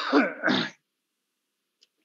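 A man clearing his throat once, briefly.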